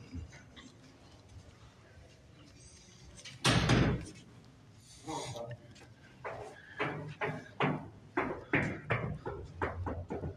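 A heavy door thump about three and a half seconds in, then a run of short knocks, about two or three a second, on a glass door in the last few seconds.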